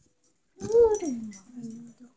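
A dog whining: one whine that rises and then falls away, followed by a lower, held whine near the end.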